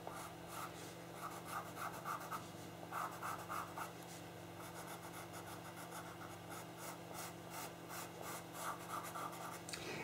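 Pastel pencil scratching over pastel paper in runs of quick short shading strokes, several a second, with brief pauses between the runs.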